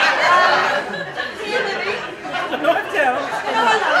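Indistinct talking and chatter from several voices.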